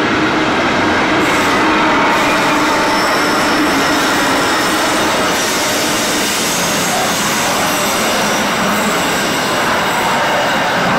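Freight train passing close by: a trailing locomotive's engine and then loaded container wagons, a steady loud rumble and rattle of wheels on the rails. Engine tones fade after the first few seconds as the wagons take over, with a faint high wheel squeal.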